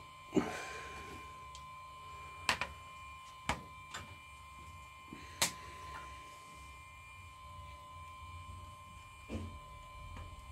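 A handful of sharp clicks and taps as small tools and an iPhone are set down and handled on a hard workbench, over a steady faint high-pitched electrical tone.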